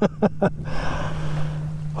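A man's laughter in a few short bursts that trail off within the first half second. A steady rushing hiss follows over a constant low hum.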